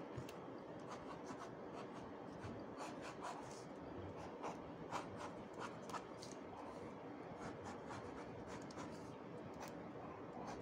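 Ink pen drawing on paper: faint, short, irregular strokes as the lines of a sketch are inked.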